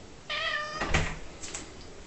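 Domestic cat giving one short meow, about half a second long. A knock follows about a second in and is the loudest sound, with a couple of lighter clicks after it.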